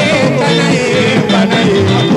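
Congolese rumba band music with vocal singing over a stepping bass line and steady drums and percussion.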